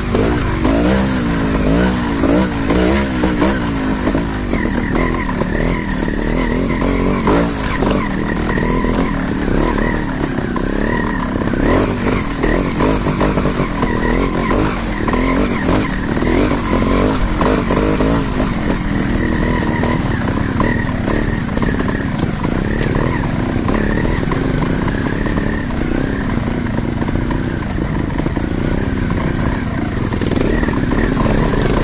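Trial motorcycle engine at low speed, the throttle blipped up and down again and again as the bike picks its way over loose rocks, with scattered knocks from the wheels and suspension hitting stones.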